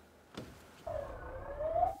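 Police vehicle siren wailing, starting about a second in, its pitch dipping and then rising steadily.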